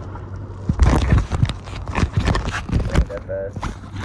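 Wind buffeting the microphone of a handheld camera, with irregular knocks from handling, starting about a second in.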